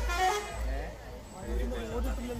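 People's voices over the low rumble of an approaching vehicle.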